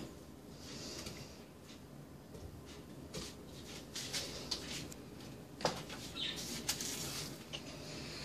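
Faint kitchen handling sounds of a banana being peeled and broken into a glass blender jar: soft rustling with scattered light clicks, and one sharper knock about five and a half seconds in.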